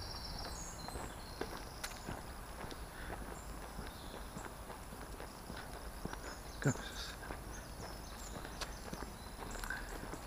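Footsteps on a leaf-strewn woodland path, irregular and about two a second, over a faint steady hum of distant road traffic.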